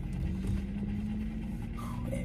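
Car engine idling, heard from inside the cabin as a steady low hum.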